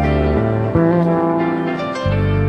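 Live rock band recording with the drums taken out: bass and guitar playing sustained pitched notes, with no drum hits. The deepest bass drops away less than half a second in.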